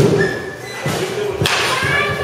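Batting practice in an indoor cage: sharp knocks of a bat hitting baseballs, two loud ones about a second and a half apart with a softer knock between, over background voices.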